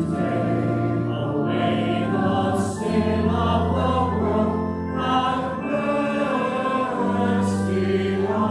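A congregation singing a hymn together, accompanied by an organ holding long, steady bass notes that change every couple of seconds.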